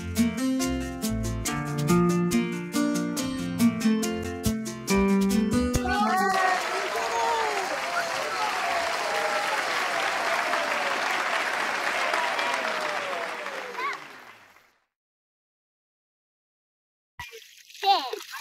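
Upbeat strummed guitar music with a steady beat, which cuts off about six seconds in to a crowd cheering and clapping with many voices at once. The cheering fades out to silence about fifteen seconds in, and a girl starts to talk near the end.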